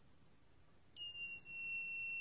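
RangeLink UHF transmitter's buzzer sounding one long, steady, high-pitched beep that starts about a second in. It is the signal that, after the bind button was held for ten seconds at power-up, the transmitter has entered high-power mode.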